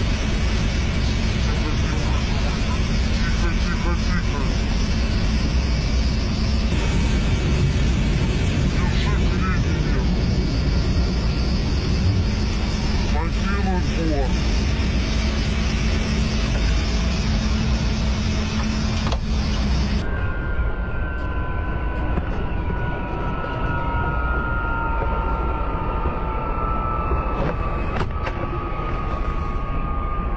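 Ka-52 attack helicopter's coaxial rotors and twin turboshaft engines heard from inside the cockpit: a loud, steady noise with a constant low hum. About two-thirds through the sound changes abruptly to a duller noise with several high whines falling slowly in pitch, the engines winding down after an emergency landing.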